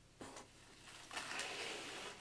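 Faint rustling of cardboard and foam packaging as a monitor panel is lifted out of its box: a soft tap near the start, then a steady rustle from about a second in.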